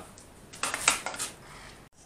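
Metal clattering and knocking as the steel battery booster trolley is handled: a short burst of rattles starting about half a second in and lasting around half a second.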